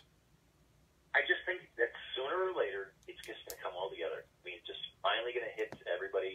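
Speech only: after about a second of silence, a man answers over a telephone line, his voice thin and cut off above the upper midrange.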